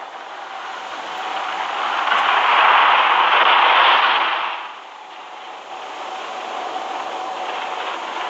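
Horror film soundtrack: a rushing swell of noise builds over the first few seconds, peaks, and falls away suddenly a little before five seconds in, leaving a quieter steady rush with a faint held tone.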